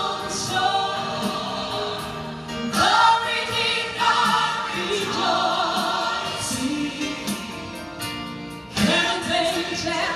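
Gospel song: sung voices holding long, wavering notes over an instrumental accompaniment.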